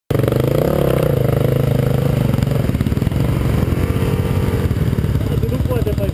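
Dirt bike engine running at low revs close to the helmet camera, its pitch rising and falling a little a couple of times.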